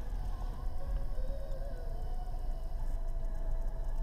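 Low steady rumble of a car creeping along at walking pace, heard from inside the cabin. A faint thin tone rises slightly and wavers from about a second in until about three seconds in.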